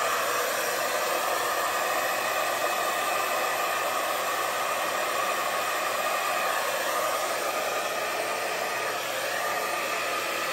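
Handheld hair dryer blowing steadily, pushing wet acrylic pour paint outward into a bloom across the canvas.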